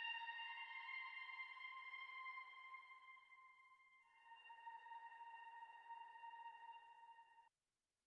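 Quiet background music of long held synthesizer tones; the sound fades, a new chord comes in about halfway, and the music cuts off abruptly near the end.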